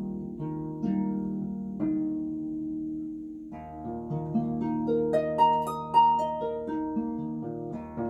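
Solo pedal harp being played: plucked notes and chords ringing over one another. A chord is left to fade for over a second before a new, busier phrase with a higher melody starts about three and a half seconds in.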